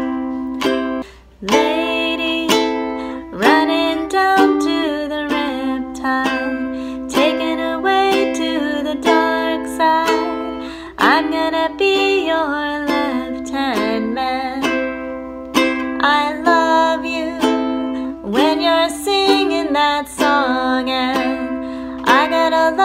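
A soprano-style ukulele strummed slowly through A minor, G and C chords, with a woman singing along.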